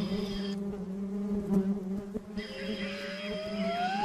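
A hornet's wings buzzing in flight: a steady low hum. In the second half a separate tone glides steadily upward.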